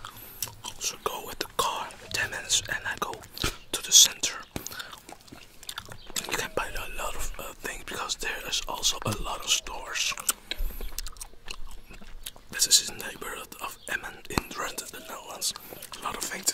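Close-miked bubblegum chewing: a dense run of wet mouth clicks and smacks, layered with soft whispering. One sharp, louder click about four seconds in.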